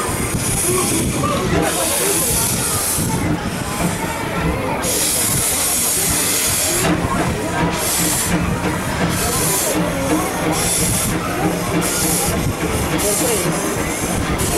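Steam locomotive 'Eureka', a 4-4-0, running slowly with its cylinder cocks open, hissing steam in repeated puffs about once a second over a low rumble, with one longer hiss midway.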